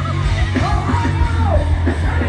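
Pop-punk band playing live: loud distorted electric guitars, bass and drums. A voice holds one long yelled note from about half a second in to a second and a half.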